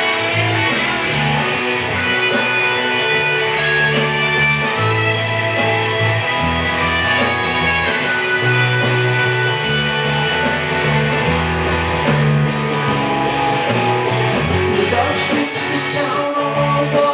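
Guitar playing chords in an instrumental passage of a rock song, the notes changing roughly once a second.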